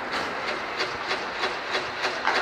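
Inline hockey play on a plastic-tile rink: skate wheels rolling with a steady clatter of short clicks, about three a second.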